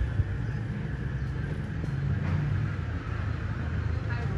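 A low, steady rumble with a brief knock right at the start.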